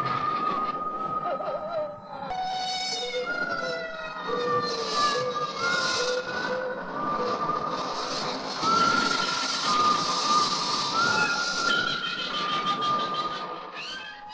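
A chorus of wolves howling: several long, overlapping howls that hold and slide in pitch, over a rushing hiss.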